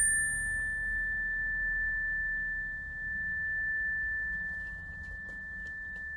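Electronic outro chime: a single high, pure tone that rings on steadily at one pitch, its brighter overtones fading away within the first second and a half.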